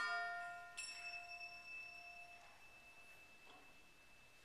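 A school concert band's final short chord, its tones dying away in the hall, then a single high bell-like percussion stroke about a second in that rings on and fades slowly: the last note of the piece.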